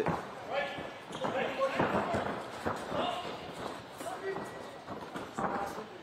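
On-court sound of a basketball game: a ball bouncing on the court a few times, with faint voices of players calling out.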